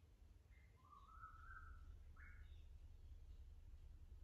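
Near silence with a low steady room hum and two faint bird calls, one longer rising call about a second in and a short one just after two seconds.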